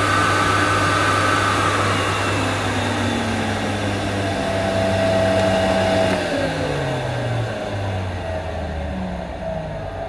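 Hoover Sensotronic 1400W vacuum cleaner motor winding down, its whine and hum falling in pitch as it slows, most plainly in the second half. It sounds rough and not too healthy as it runs down, a grumble the owner puts down to bearings that need greasing and a dirty commutator.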